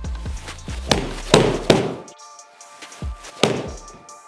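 A golf iron striking a ball into a simulator: a rush of sound and sharp thwacks a little over a second in, then another thud near the end. Background music with a beat plays under the first half.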